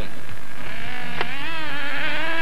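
Radio-controlled 1/8-scale model racing car's 3.5 cc two-stroke glow engine buzzing at high revs, its pitch rising slowly and wavering as the throttle changes. There is a single sharp click just over a second in.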